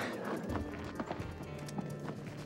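Tense film-score music: a low droning bass comes in about half a second in under held tones, with a scatter of light knocks.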